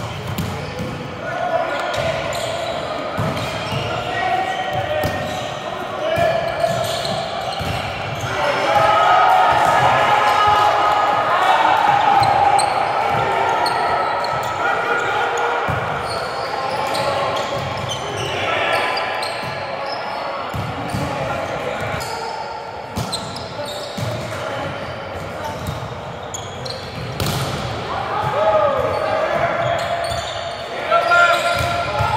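Volleyball being played in a large echoing gym: sharp knocks of hands hitting the ball and the ball striking the hardwood floor, among the players' distant calls and chatter.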